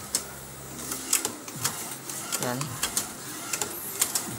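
DTF inkjet printer printing: the print-head carriage shuttles across with a steady motor whir, punctuated by several sharp clicks.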